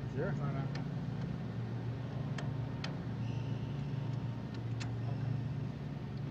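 A few short, sharp clicks and taps from hands working the latches and film mechanism of an open IMAX film camera, over a steady low hum.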